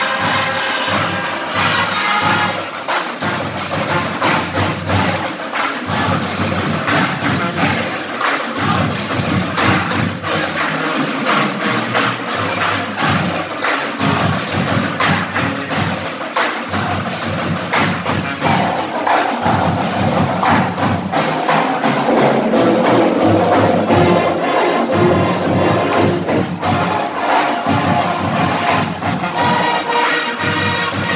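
Marching band playing live: brass instruments, sousaphones among them, over a steady, rhythmic beat of drums and percussion, loud and without a break.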